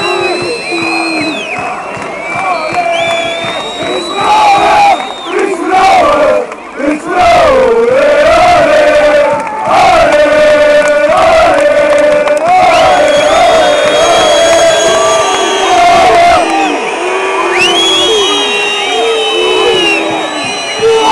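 Football stadium crowd chanting in unison, loud, with one long drawn-out chant through the middle.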